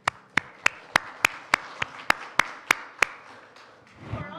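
Hands clapping in an even rhythm, about eleven sharp claps at roughly three a second, over a fainter spread of clapping, stopping about three seconds in.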